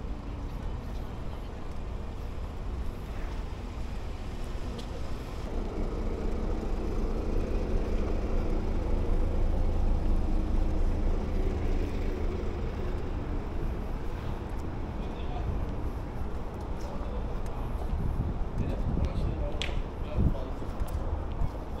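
Outdoor parking-lot ambience: a steady low rumble of vehicles and traffic, swelling to a louder engine hum in the middle that fades away again.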